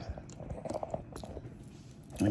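Handling noise from a phone being gripped and moved by hand: a run of small irregular clicks and rustles.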